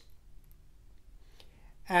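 Near silence with a few faint clicks during a pause in talk. A woman's voice starts again near the end.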